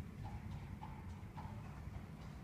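Faint, muffled hoofbeats of a horse on an indoor arena's sand surface, over a steady low rumble.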